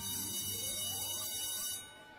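A film transition sound effect: a sudden hissy whoosh with ringing tones and a slowly rising sweep. It cuts off shortly before the end.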